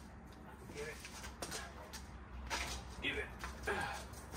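A dog's short, high vocal sounds at play, whines and yips, several times from about a second in, mixed with a person's voice.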